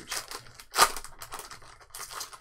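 Foil booster pack wrapper crinkling as it is torn open by hand, with the loudest rip a little under a second in.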